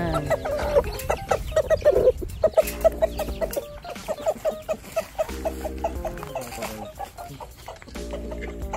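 Chickens clucking in quick, short calls. Three short, low, buzzing sounds come in about two and a half seconds apart.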